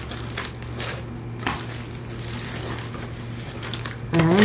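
Plastic bag being handled, rustling and crinkling with a sharper crackle about one and a half seconds in, over a steady low hum.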